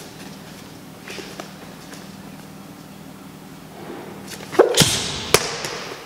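A heavy medicine ball pushed off the chest with a sudden rush of effort about four and a half seconds in, then one sharp thud as it lands on the rubber gym mat.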